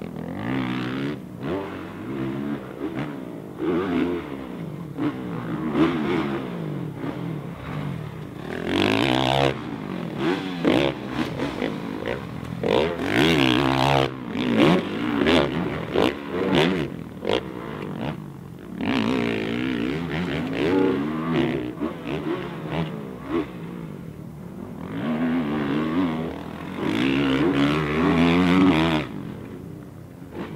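Motocross dirt bike engine revving up and down over and over as the throttle is opened and closed through jumps and turns, with loud full-throttle surges about halfway through and again near the end.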